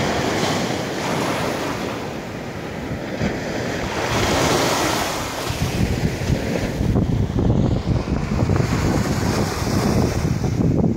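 Small ocean waves breaking and washing up the sand at the water's edge, with wind buffeting the microphone. The wind rumble grows heavier from about halfway through.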